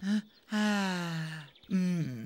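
A character's voice giving a long, contented, breathy sigh, one drawn-out 'ahh' about a second long that falls steadily in pitch.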